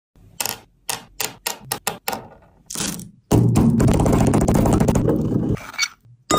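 Hard mint tablets being handled: a quick run of sharp clicks and taps, then about two seconds of loud, dense crunching that stops abruptly.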